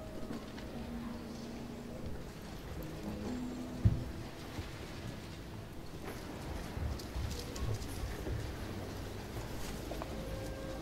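Library ambience: a low, steady rumble with a few soft held tones. A dull thump about four seconds in is the loudest sound, and faint scattered clicks follow in the second half.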